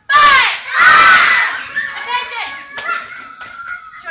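Children's voices shouting: two loud shouts in the first second and a half, then quieter voices with a drawn-out call.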